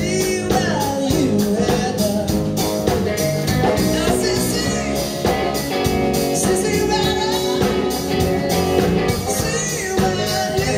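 Live blues-rock band playing: electric guitar, electric bass and drum kit keeping a steady beat.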